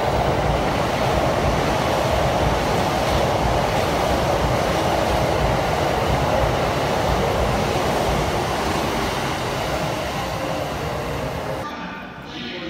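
Electric passenger train passing through a station at speed: a loud, steady rush of wheel-on-rail noise with a low rumble, fading over the last couple of seconds as it goes by.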